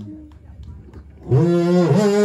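A man's voice breaks into a loud, growling howl a little over a second in, its pitch wavering and slowly rising, in the rough-voiced style of Delta blues shouting.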